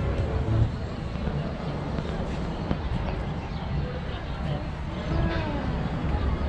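Outdoor ambience of faint, indistinct voices of people nearby over a steady low rumble.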